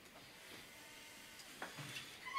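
Quiet room tone with a couple of faint light clicks near the end.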